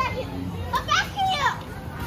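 A young child's voice: a few short, high-pitched vocal sounds that glide up and down, clustered about a second in.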